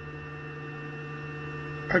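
Steady electrical hum made of several constant tones, from the aircraft's powered-up avionics with the engine not running.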